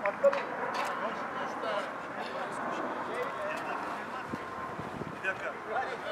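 Low, indistinct murmur of a group of people talking, with one sharp knock just after the start.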